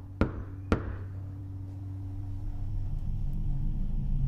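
Two knocks of a fist on a wooden door, about half a second apart, near the start. A low drone follows and slowly grows louder.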